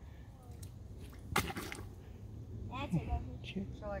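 A snapping turtle grabbing a hooked fish at a pond's surface: one brief splash about a second and a half in, with faint voices later on.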